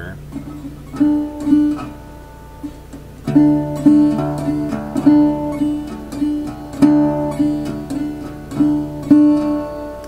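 Resonator guitar in open D tuning played fingerstyle with thumb and finger picks: a steady, unchanging thumbed bass drone under a swung shuffle pattern of repeated plucked treble notes.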